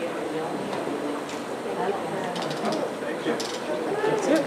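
Low, indistinct chatter of several people talking in a large hard-walled room, with a few light clicks and taps about two and a half and three and a half seconds in.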